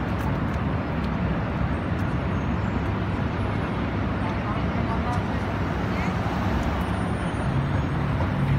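Steady city street noise: traffic running with indistinct voices of passers-by. A low engine hum grows stronger near the end.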